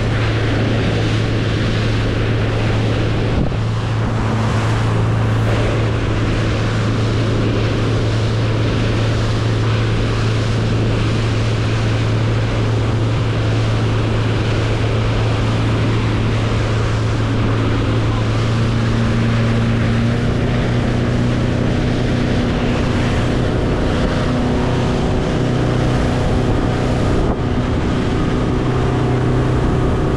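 Motorboat underway at speed: its engine gives a steady low drone under the rush of spray off the hull and wind buffeting the microphone. From about two-thirds of the way through, the engine note gains higher tones.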